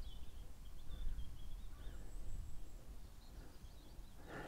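Faint songbird song, a run of quick warbling notes, over a low steady outdoor rumble.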